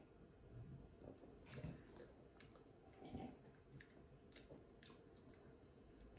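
Near silence, with faint sips, swallows and mouth sounds of people drinking from small glasses, and a few soft clicks.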